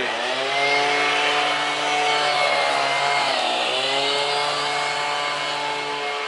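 An engine running steadily, its pitch sagging and recovering at the start and again about three and a half seconds in, with a thin steady high whine over it.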